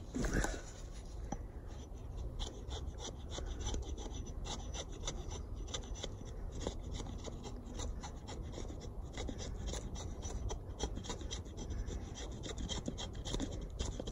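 Scandi-ground blade of a Council Tool Woodcraft Camp-Carver hatchet shaving feather-stick curls from a split hardwood stick: many short scraping strokes in quick succession.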